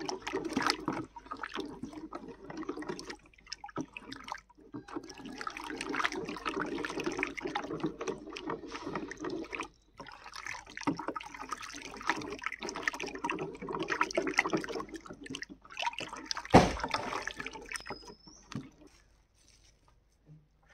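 Wooden stick stirring a thick, frothy homemade laundry-soap mixture of caustic soda in a plastic bucket: churning, sloshing liquid with frequent clicks, in spells broken by short pauses. There is one loud knock about three-quarters of the way through.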